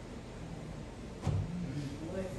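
Low, steady room hum with no clear speech. A little past the middle come a brief knock and a short, low voice-like murmur.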